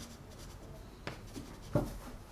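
Chalk pastel stick stroking across paper: two short scratchy strokes, the second, near the end, louder.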